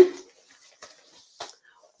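Faint fabric rustling and a few soft taps as a stretchy fabric glove is pulled onto a hand.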